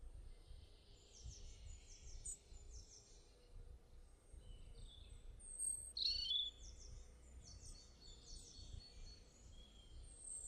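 Birds chirping faintly in the background: runs of short, high repeated notes, with one louder call about six seconds in, over a low background rumble.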